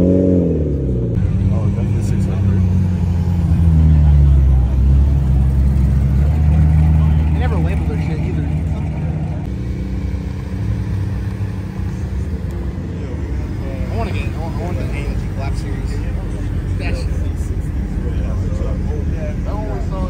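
Nissan GT-R's twin-turbo V6 passing close at a crawl, its pitch rising and then falling as it goes by at the start. A car engine follows, running at low revs for several seconds with its loudest point about four seconds in, then fading under people talking in the background.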